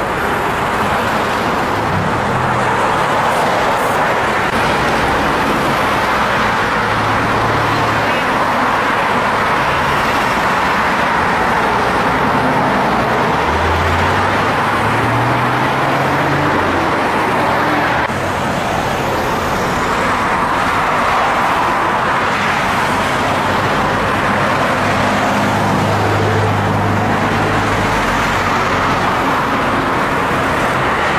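Steady highway traffic: cars, pickups and trucks passing with a continuous rush of tyre and engine noise. Low engine drones come and go, one rising in pitch about halfway through.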